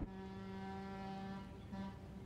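Boat horn sounding: one long steady blast of about a second and a half, then a short second blast.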